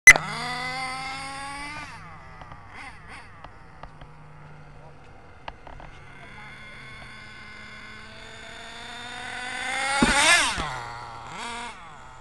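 HPI Savage 4.6 nitro RC monster truck's small two-stroke glow engine revving at high pitch. A sharp click at the start, then a rev that climbs for about two seconds and drops back; the engine then builds to its loudest about ten seconds in, with a falling pitch as the truck passes, and revs briefly once more near the end.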